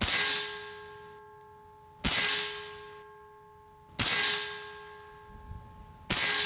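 Three shots from a Diana XR200 .22 PCP air rifle, about two seconds apart. Each is a sharp crack followed by a metallic ring that fades away over about two seconds.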